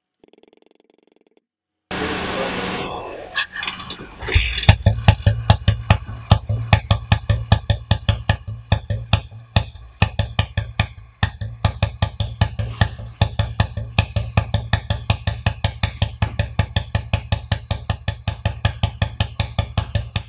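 Single-cylinder engine of a 1984 cast-iron Royal Enfield Bullet, started for the first time since it was opened up: a brief rush of noise about two seconds in, then the engine fires about four seconds in and settles into an even idle of about five beats a second.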